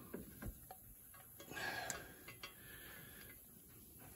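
Faint, scattered light metallic clicks and ticks as header bolts are handled and fed in by hand, with a brief rustle about a second and a half in.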